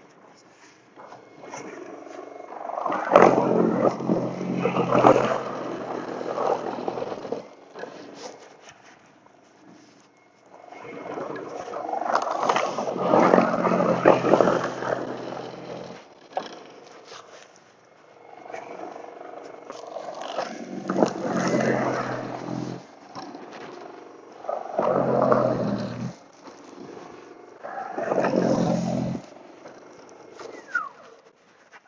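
Toro Power Clear e21 60-volt brushless battery snow blower, its steel auger and motor running under load as it chews through and throws snow. It comes in five separate runs with a low steady hum, the first two the longest, dropping away between runs.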